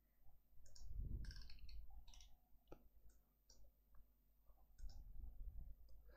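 Faint, scattered computer mouse clicks, a dozen or so short clicks at uneven intervals, with a soft low rumble between about one and two and a half seconds in.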